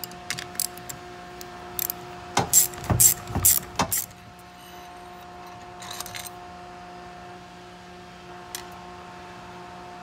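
Long steel through-bolts being drawn out of an electric sprayer pump's housing and handled, with clinks and clicks of metal on metal. The loudest cluster comes about two to four seconds in, and a couple of single clinks follow later, over a steady low hum.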